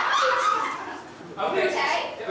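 A person speaking on stage in a high, gliding, whiny voice, in two stretches with a short pause between.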